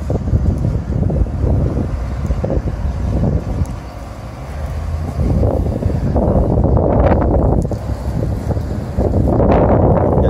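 Wind buffeting a handheld microphone: a loud, low rumble with gusts, growing louder in the second half.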